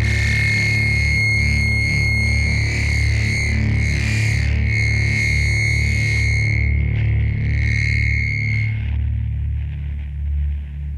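Instrumental sludge/doom metal: heavily distorted guitars and bass in a low, heavy drone, with a long high note held above it that drops out about nine seconds in.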